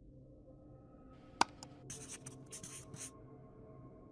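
Scribbling sound effect of handwriting, several quick scratchy strokes between about one and three seconds in. A single sharp click comes about a second and a half in. Faint, steady background music runs underneath.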